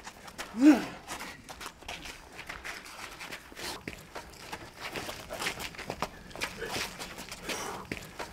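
Feet shuffling and scuffing on concrete as two bare-knuckle fighters move around each other: a run of faint, irregular scrapes and taps. One short, loud vocal sound comes about a second in.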